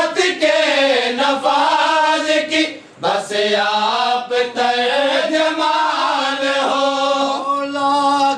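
Men chanting a noha, a Shia mourning lament, unaccompanied, in long held notes that slide up and down in pitch, with a brief breath pause about three seconds in.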